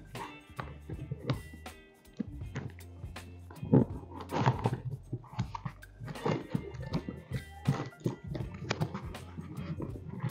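Quiet background music over irregular rustling, scraping and knocks of a sealed cardboard box being opened by hand.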